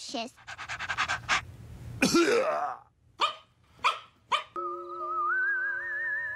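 Cartoon puppy panting quickly, then a louder yelp and three short yaps. Soft music with a wavering, whistle-like lead tone comes in near the end.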